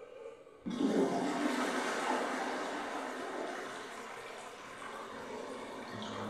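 Water flushing down a drain: a sudden rush of water begins just under a second in and keeps pouring, slowly easing off.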